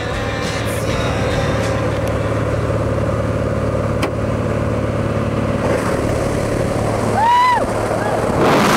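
Steady drone of a small jump plane's engine heard from inside the cabin near the open door. About seven seconds in, a person gives a short high yell that rises and falls in pitch.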